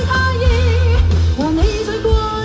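A woman singing a Cantonese pop song live through a microphone over a band with heavy bass, holding wavering notes and sliding up into a new note about one and a half seconds in.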